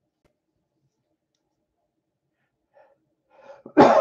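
Near silence, then a man draws a breath and clears his throat loudly near the end.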